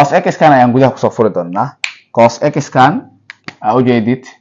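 A man speaking, with two short sharp clicks a little over three seconds in.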